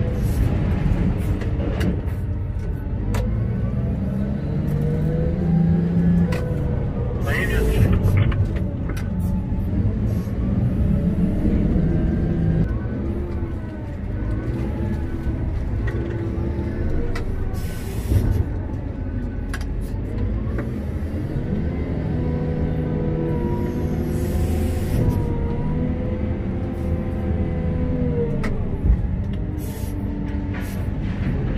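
Heard from inside the cab, a Komatsu WA900 wheel loader's diesel engine and hydraulics run under load, their tone rising and falling as the boom and bucket are worked. A few short, sharp knocks stand out, the clearest about 7 to 8 seconds in and near 18 and 25 seconds.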